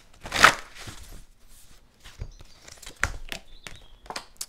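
Oracle and tarot cards being handled and laid on a cloth-covered table: a brief swish of cards sliding about half a second in, then light scattered clicks and taps of cards being set down, a few together near the end.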